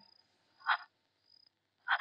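Faint, steady high chirring of crickets in the background, with a short gasp about two-thirds of a second in and a louder gasp near the end.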